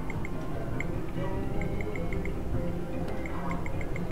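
Video poker machine beeping as it deals cards one at a time on slow speed: short electronic blips in little runs, over casino background music and din.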